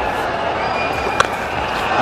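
Stadium crowd noise with a single sharp crack of a cricket bat striking the ball a little over a second in.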